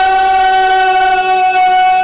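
One long held musical note, steady in pitch, from devotional singing and its accompaniment.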